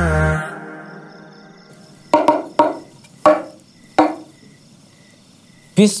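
Four sharp, ringing knocks about two seconds in, spread over about two seconds, typical of a bamboo stick struck against bamboo tubes, after the tail of intro music fades out.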